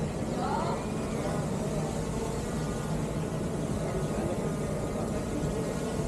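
DJI Mini 4 Pro quadcopter hovering overhead, its propellers giving a steady hum.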